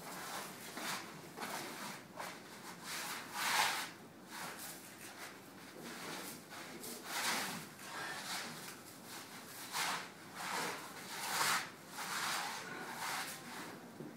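Paint being applied by hand in a run of short, irregular rubbing strokes across a surface, about one or two strokes a second, scraping and scrubbing, with the loudest strokes a few seconds in and again near the end.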